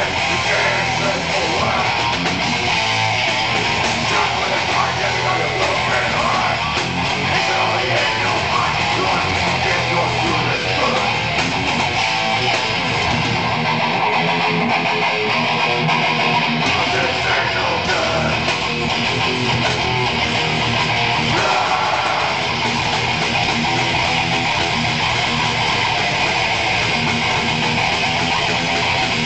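Live metal band playing an instrumental passage, with electric guitar over bass, loud and continuous. The deepest bass drops out for about two seconds midway, then comes back in.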